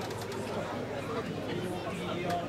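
A Shinto priest reciting a norito prayer in long, held tones, over a low murmur of onlookers.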